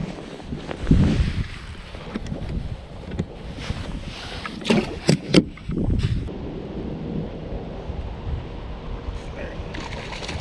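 Wind rumbling on the microphone, with a thump about a second in and three sharp clicks around the middle as gear is handled on a carpeted boat deck.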